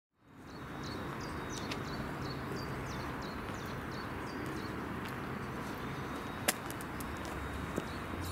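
Steady outdoor background noise fading in, with a small bird chirping repeatedly, about three short high calls a second, over the first four seconds or so. A single sharp click comes about six and a half seconds in.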